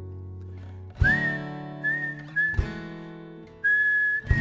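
Acoustic guitar strummed in two slow chords about a second and a half apart, each left to ring, with a whistled melody over them in short held notes.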